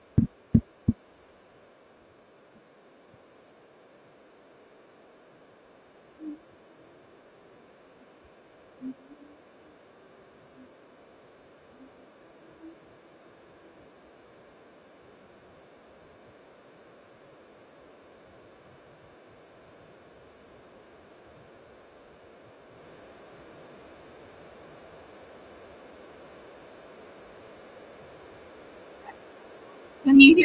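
Low room noise, with three sharp knocks or clicks in the first second and a few faint, brief low sounds scattered between about six and thirteen seconds in. No music is heard.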